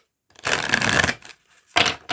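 Tarot card deck being shuffled by hand: a rush of sliding cards lasting about a second, then a shorter burst of card noise near the end.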